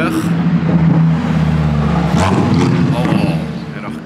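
Lamborghini Huracán EVO Spider's V10 engine as the car drives past. The engine note holds steady at first, rises in pitch about halfway through, then fades near the end.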